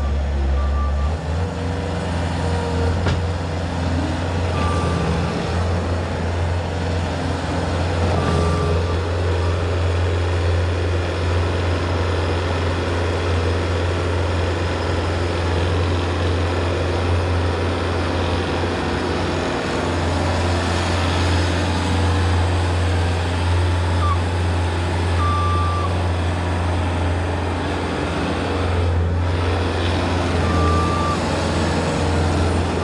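Bobcat S185 skid-steer loader's diesel engine running steadily at high throttle while manoeuvring under the weight of a heavy boulder raised in its forks; the engine note steps up about a second in. A backup alarm beeps a few times, widely spaced.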